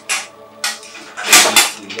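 A wrought-iron security gate clanking and rattling as it is handled, in a series of sharp metallic knocks with the loudest clatter about one and a half seconds in.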